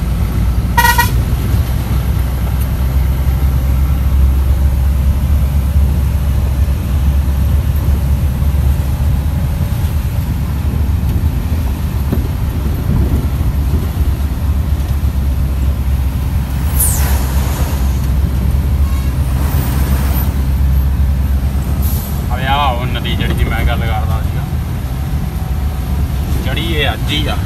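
Steady low engine and road rumble heard inside a moving truck's cab, with a short horn toot about a second in.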